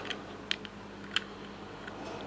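Three small sharp clicks as a plastic end cap is worked onto an aluminium M.2 NVMe SSD enclosure.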